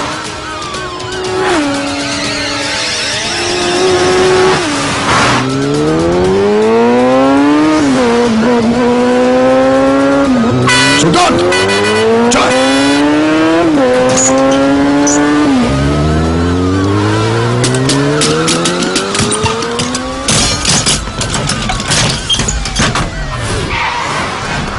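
Motorcycle engine accelerating hard through the gears, its pitch climbing and dropping back several times, with tyre squeal and music mixed in. A burst of clattering impacts comes near the end.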